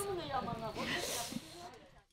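A woman's voice trailing off, with a breathy hiss about a second in, then fading to near silence near the end.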